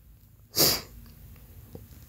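A person sneezing once, a short sharp hissy burst about half a second in.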